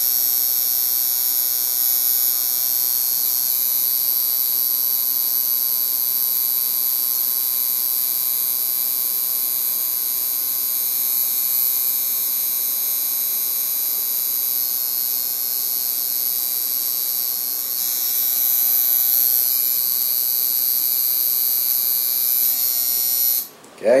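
Coil tattoo machine buzzing steadily while pulling a line into skin. It cuts off suddenly near the end as the foot pedal is released.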